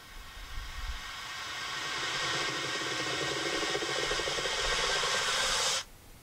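A rising hiss-like noise swell from a music video's soundtrack, building for several seconds and then cutting off suddenly near the end.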